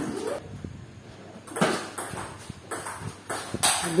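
Table tennis ball struck by paddles and bouncing on the table: a few sharp clicks a second or two apart. A brief rising cry comes at the very start.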